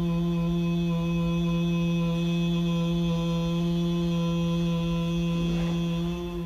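A man's low, steady hummed chant held on one note through a single long breath out.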